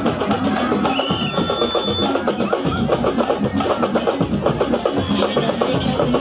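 Sabar drums playing a fast mbalax rhythm: dense, rapid hand-and-stick strikes with no break.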